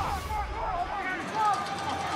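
Indistinct voices over the low background noise of a rugby stadium broadcast, with a brief low rumble at the start.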